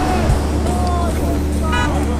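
A motorcycle engine running with a steady low hum under several people's voices calling out, with a short high toot near the end.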